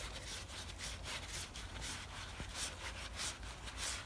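Gloved hand rubbing on the steel as it spins a threaded end piece off the pulley shaft of a Colchester Master lathe: a quick run of short, faint rubbing strokes, several a second.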